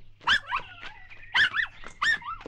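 A dog whimpering and yipping: a few short, high cries that rise and fall in pitch, in two pairs about a second apart.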